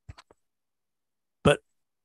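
A pause in speech, near silence apart from a few faint ticks at the start, then a single short, clipped spoken word, 'But', about one and a half seconds in.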